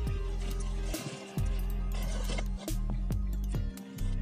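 Background music with sustained low bass notes and sharp percussive hits.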